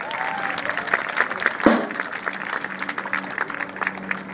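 Audience applauding with dense, irregular clapping and scattered voices, with one sharp knock a little before halfway.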